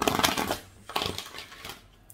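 Oracle cards being shuffled by hand: a rapid, papery flutter of cards slapping together, in two passes.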